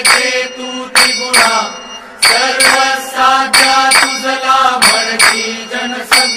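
Hindu devotional aarti music with no words: a melody over a steady drone, punctuated by sharp, ringing percussion strikes about twice a second.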